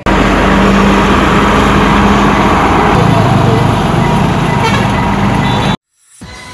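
Passenger train running past at close range: a loud, steady rumble that cuts off suddenly near the end.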